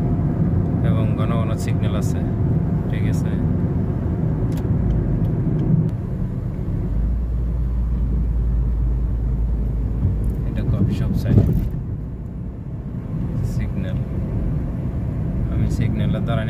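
Car interior noise while driving: a steady low rumble of road and engine, with a brief loud thump about eleven seconds in.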